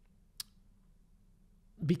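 A single short, sharp click about half a second in, over quiet room tone; a man's speech starts again near the end.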